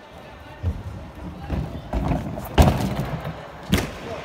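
Gymnast's hands striking a Spieth pommel horse during a routine: a string of irregular thuds and slaps, the loudest about two and a half seconds in, and a last sharp impact near the end.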